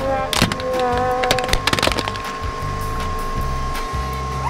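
Pink plastic case cracking and splintering as a hydraulic press crushes it flat, with a few sharp cracks in the first two seconds. Background music and a steady high tone play over it.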